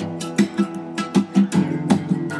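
Acoustic guitar strummed in a steady rhythm, an instrumental gap between vocal lines of an Americana song.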